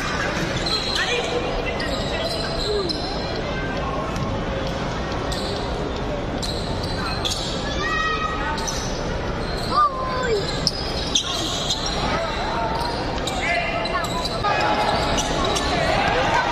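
Basketball bouncing on a hardwood court in a reverberant arena, over indistinct spectators' voices.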